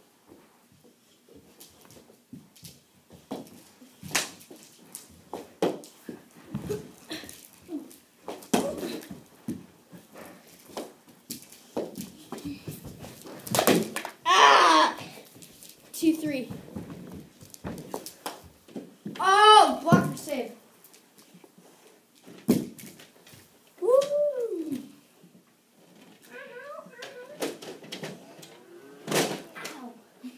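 Children playing knee hockey: mini hockey sticks and ball give scattered sharp knocks and clicks against each other and the floor, and the children shout several loud wordless yells about halfway through, one rising and falling in pitch.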